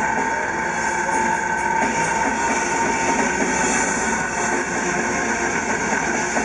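Black metal band playing live at high volume, heard from within the crowd: a dense, unbroken wall of distorted guitars and drums.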